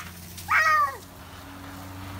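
A toddler's short, high-pitched vocal cry about half a second in, falling in pitch.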